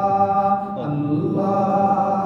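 A man chanting an Urdu munajat, a devotional supplication, in long held melodic notes, with a brief dip to a lower, gliding phrase about a second in.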